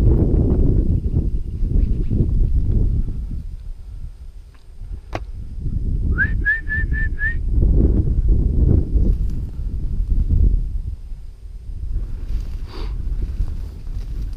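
Steps through dry, snow-dusted grass with wind on the microphone as a rough, steady low noise. About six seconds in comes a quick run of five short whistled notes on one pitch, the first sliding up into it.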